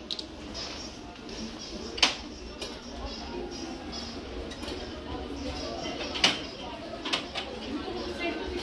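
Indoor shop ambience of indistinct background voices, with two sharp clinks of glass or ceramic ware, one about two seconds in and another about six seconds in.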